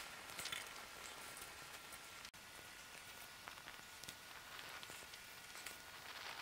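Wet firewood burning in a Solo Stove, giving a faint hiss with scattered small pops as the water steams out of the wood.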